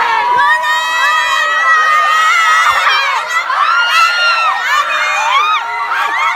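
Crowd of fans screaming and cheering: many high voices calling at once, some notes held and others sliding up and down.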